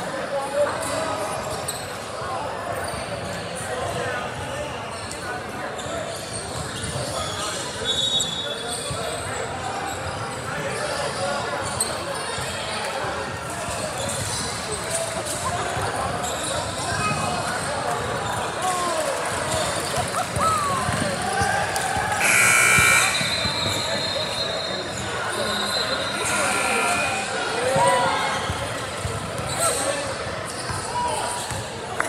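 Basketball dribbling on a hardwood gym floor with unintelligible spectator chatter echoing in a large hall. A short, loud, shrill tone sounds about three-quarters of the way through.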